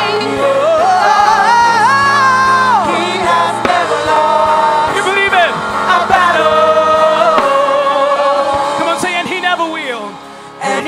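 Live gospel worship song: a male lead singer sings a sliding, ornamented line into a microphone over held keyboard chords and backing vocals, with a steady low beat.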